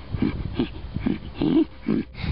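A person's voice making rhythmic guttural grunts, about three a second, as a creature voice for a chupacabra puppet.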